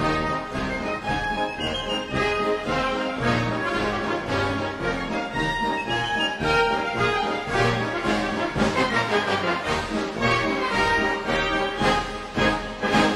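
A military march played by a band, with brass to the fore over a steady marching beat.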